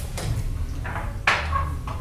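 Small glass tasting glasses being picked up and set down on a glass tabletop: a few short knocks, the loudest a little over a second in.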